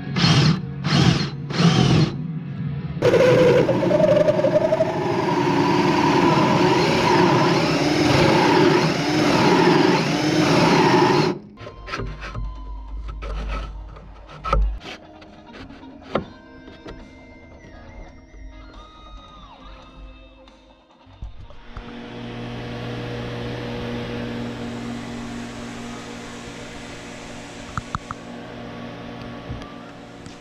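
A cordless drill running a hole saw into a block of wood, first in three short bursts, then in one long cut for about eight seconds, with background music. After that come quieter clicks and knocks, and a steady low hum in the last third.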